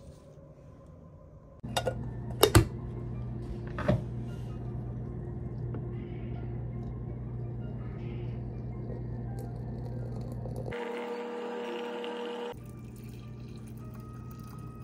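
Hot water and tea being poured into a glass teapot and a mug, over a steady low hum. There are a few sharp clinks of glass and china about two and four seconds in, and a short hissing pour in the last few seconds.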